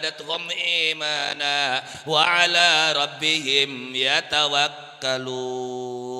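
A man chanting into a microphone in a melismatic style, his pitch wavering and sliding between notes. Near the end he holds one long steady note.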